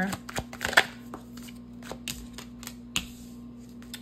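A deck of tarot cards being shuffled and handled by hand: a quick run of flicking clicks in the first second, then a few more around three seconds in, when a card is laid down. A steady low hum sits under it.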